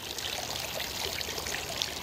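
Garden fountain trickling and splashing steadily.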